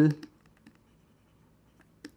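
Faint taps and scratches of a stylus writing on a tablet screen.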